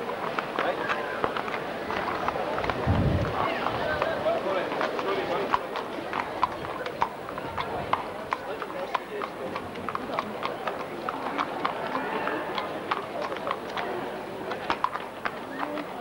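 Horse's hooves clip-clopping at a walk on a paved street, an irregular clatter of hoof strikes over a crowd talking. A brief low thump about three seconds in.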